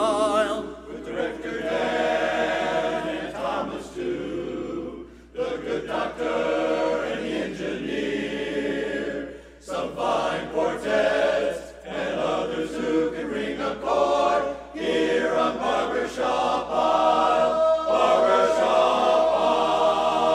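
Men's barbershop chorus singing a cappella in close harmony, in phrases with short breaks, growing louder into a long held chord near the end.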